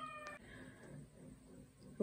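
A faint, long animal call in the background, one steady pitch falling slowly, that ends about half a second in and leaves near silence.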